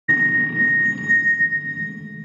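Lead-in of the intro soundtrack: a steady high-pitched electronic tone held over a low rumble. It starts abruptly and fades slowly.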